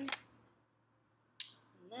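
A sharp plastic click about one and a half seconds in, as a Brita filter cartridge is pushed into its plastic housing, with a lighter click at the very start.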